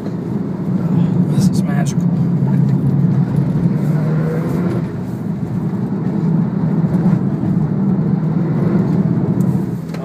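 Porsche 911 Turbo S (997) twin-turbo flat-six heard from inside the cabin while being driven hard on a winding road: a steady, loud engine drone that eases off briefly about five seconds in and then builds again.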